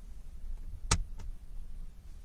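A stamp being pressed by hand onto fabric on a tabletop: one sharp tap about a second in, then a fainter one just after, over a low steady hum.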